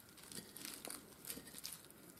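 A fork working through a bowl of spring-mix salad leaves: faint, scattered rustling and crinkling of the leaves.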